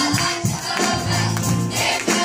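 Children's choir singing with instrumental accompaniment and a steady beat.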